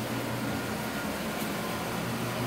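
Steady background hum with an even hiss. Nothing starts or stops.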